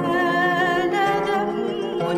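A small mixed choir singing a Christian hymn in long, held, gently wavering notes, with instrumental accompaniment.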